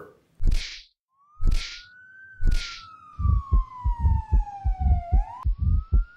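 Siren sound effect in an edited outro: one electronic wail rises, falls slowly over about three seconds, then swoops up sharply and cuts off near the end. Under it come three heavy whooshing hits about a second apart, then a fast run of low drum beats, about four or five a second.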